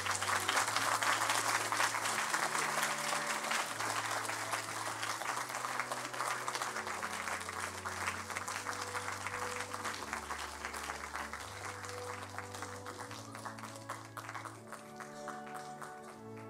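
Audience applauding, the clapping dying away toward the end, over background music with slow, sustained low notes.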